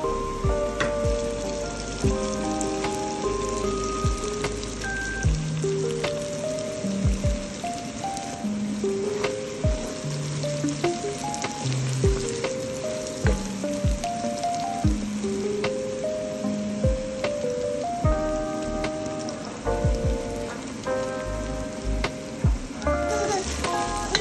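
Background music with a simple stepping melody over onions and chopped tomatoes sizzling in oil in a frying pan as they are stirred.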